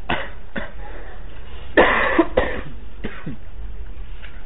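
A person coughing in a series of short bursts, the loudest a cluster of coughs about two seconds in.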